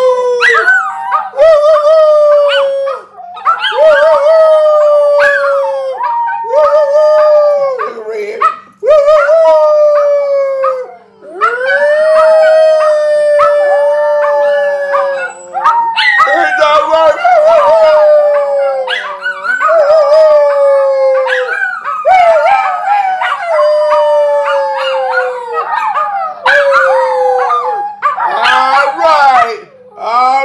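A dog howling over and over, long drawn-out calls of one to three seconds that sag in pitch at their ends, with brief breaks between them.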